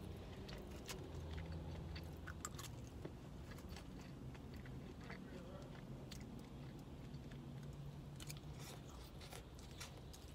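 Close-up eating sounds: a person chewing noodles with small wet mouth clicks and smacks, faint, over a low steady hum.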